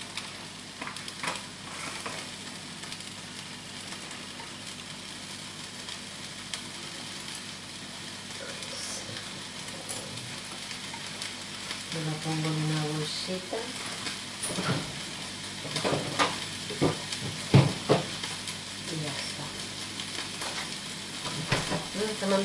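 Meat frying in a pan, a steady sizzle throughout, with knocks and clatter of kitchen items in the second half, the loudest a sharp knock near the end.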